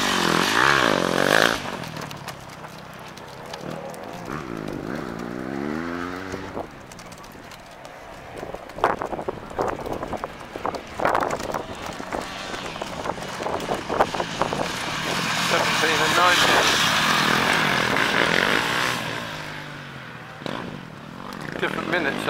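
Enduro motorcycles passing close, engines revving with the pitch rising and falling as each goes by. One passes in the first second or so, another revs around four to six seconds in, and a longer, louder pass swells in the second half as two riders come through together.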